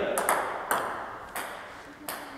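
Table tennis ball bouncing on a hard surface: a series of light, sharp clicks a little over half a second apart, each fainter than the last.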